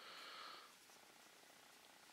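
Near silence, with a faint hiss in the first half-second.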